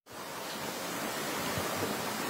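Steady, even hiss of outdoor background noise on an open field microphone, fading in over the first half second.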